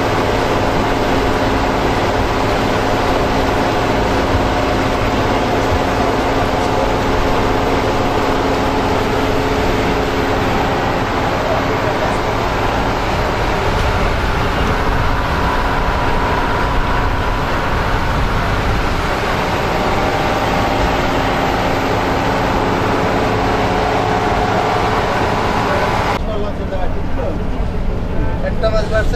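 A small river launch's engine drones steadily while its bow wave rushes and splashes against the hull. About 26 s in, the sound drops off suddenly to a quieter background with voices.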